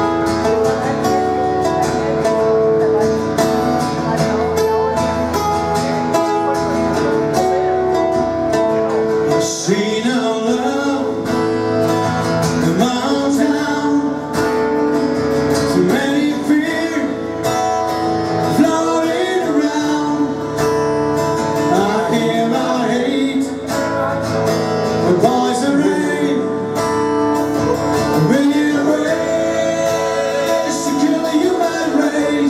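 Two guitars, one acoustic and one electric, playing a song live, with a sung vocal coming in about ten seconds in and continuing over the guitars.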